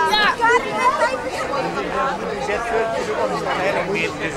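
Speech: several people talking close together in a small crowd, voices overlapping into chatter.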